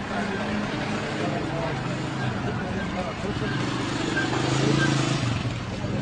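Indistinct men's voices talking in the street, over the steady noise of a vehicle engine.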